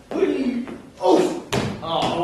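Improv performers speaking gibberish with animated, swooping voices, and a single sharp knock about one and a half seconds in.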